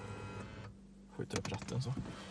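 A small electric motor in the car's cabin gives a steady whir that stops under a second in. After a short pause come several light clicks and rattles as the ignition key is handled.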